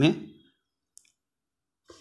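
The tail of a man's speech, then near silence broken by a single short, faint click about a second in.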